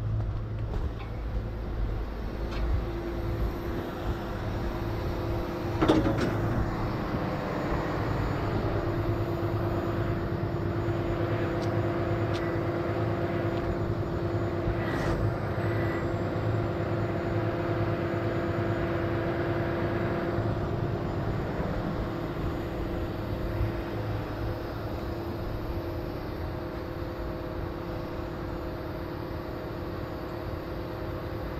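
Heavy rotator wrecker's diesel engine running with a steady hydraulic whine as its boom winches lift the loaded trailer on cables. A sharp clank comes about six seconds in, and the whine holds from about eight seconds to just past twenty seconds, then eases.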